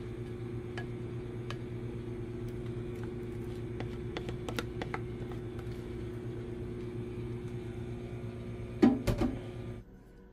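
Microwave oven running with a steady hum, while a metal spoon scrapes cake batter out of a bowl into a glass baking dish with scattered light clicks. A louder knock comes near the end, and the hum stops just before the end.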